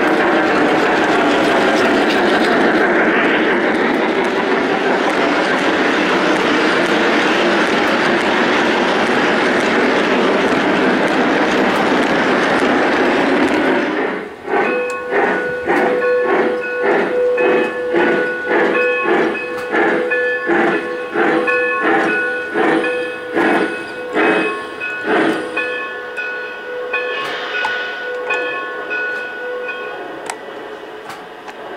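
Lionel O-gauge Southern Pacific GS-2 4410 model steam locomotive with its electronic steam sound system: first a loud, steady rushing of the running locomotive, then, from about halfway, rhythmic beats about two a second with ringing tones. The beats stop a few seconds before the end and the ringing tones carry on more quietly.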